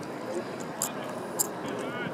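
Faint voices of spectators and players over steady outdoor background noise, with two sharp clicks about half a second apart near the middle.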